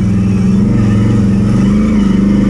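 ATV (quad bike) engine running, holding a steady, even note as the quad drives along.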